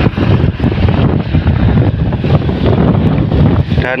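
Wind buffeting an outdoor microphone: a loud, uneven rumble of low noise that rises and falls in gusts.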